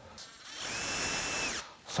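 Cordless drill running in one burst of about a second and a half: its motor whine rises as it spins up, holds steady, then drops as it stops.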